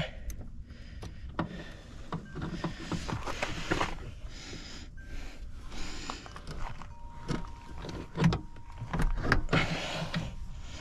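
Hand ratchet wrench clicking in short runs as a truck's rear-seat mounting bolt is worked by hand, with scattered knocks of metal on the seat bracket.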